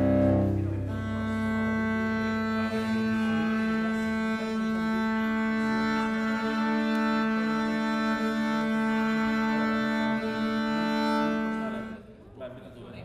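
A string quartet of violins, viola and cello plays bowed strings. Lower notes end about a second in, and a long sustained chord is held for about ten seconds before it cuts off suddenly near the end.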